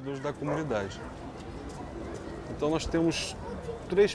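Pigeon cooing, with a call about half a second in and another near three seconds, over a moderate outdoor background.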